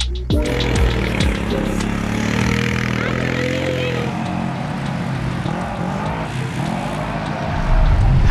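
Quad bike (ATV) engines running and revving, their pitch rising and falling, with sand and dust noise, over background music.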